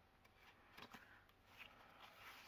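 Near silence, with faint rustles and light taps of paper as a card on a flip piece in a handmade paper journal is turned over by hand; the clearest rustle comes a little before the middle.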